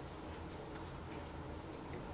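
Faint ticking of a classroom wall clock over a low, steady room hum.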